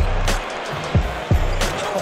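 Background music with a beat of deep bass kicks, each dropping quickly in pitch, several a second.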